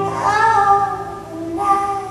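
A woman singing live, holding one long note and starting another about one and a half seconds in, with acoustic guitar accompaniment beneath.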